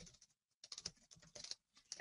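Faint computer keyboard typing: a quick run of light keystrokes starting about half a second in.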